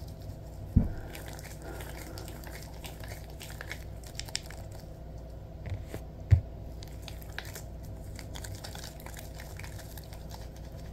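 Latex gloves slick with lotion rubbing and squeezing together, making faint squelching, sticky crackling sounds. Two soft low thumps stand out, one about a second in and a louder one just past six seconds in.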